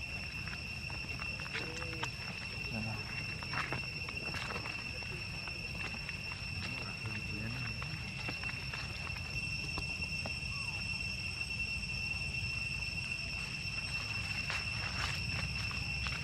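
Steady, high-pitched insect drone, with faint voices now and then and a few light rustles and clicks underneath.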